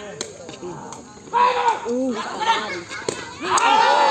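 Rattan sepak takraw ball kicked, with a sharp smack just after the start and another about three seconds in. Spectators shout throughout and swell into loud cheering near the end as the rally is won.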